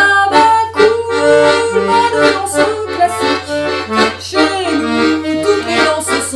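Accordion playing a marchinha-style dance tune over a steady beat.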